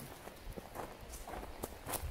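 Footsteps on a cleared dirt path strewn with sticks and brush: a few soft, irregular steps.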